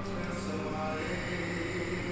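Background music of sustained, chant-like droning tones that shift pitch slowly.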